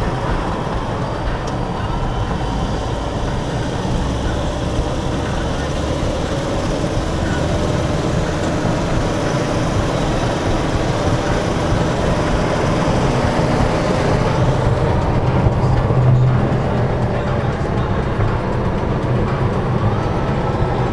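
Steady road and engine noise of a car driving, heard from inside the moving vehicle.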